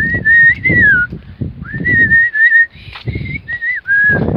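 A person whistling a tune close to the microphone, in several phrases of held, slightly wavering notes with short breaks between them. Footsteps on concrete steps sound underneath.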